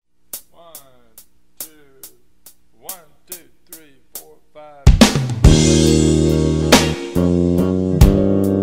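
A blues tune opens quietly, with steady ticks about twice a second under short falling notes. Just before five seconds in, the full band comes in loudly on drum kit and guitar.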